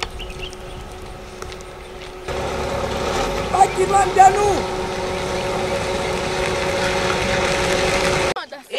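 A small car driving past close by on a dirt road: steady engine hum and tyre noise, growing louder about two seconds in. A few brief shouted voices come over it a little past the middle.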